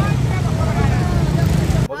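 Wind rumbling on the microphone, with faint crowd voices under it. It cuts off suddenly near the end.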